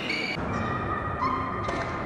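Court shoes squeaking on a sports hall floor during a badminton rally: a few short squeaks over the hall's background noise.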